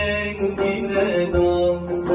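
A man singing a Turkish classical şarkı in makam Nihavend in long held notes, accompanied by a plucked tanbur and a frame drum keeping the aksak usul; a low drum stroke lands about halfway through.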